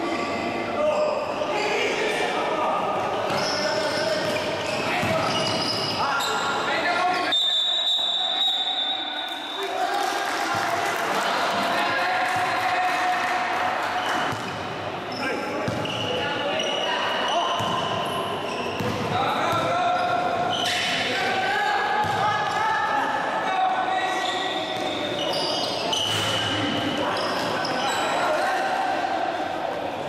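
Basketball dribbling and bouncing on a wooden gym floor during play, under a steady mix of players' and spectators' voices that echo around the hall.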